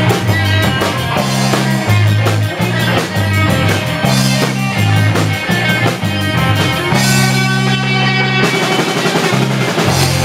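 Garage rock band playing live without vocals: drum kit beating a steady rhythm under a repeating fuzz-guitar and bass riff.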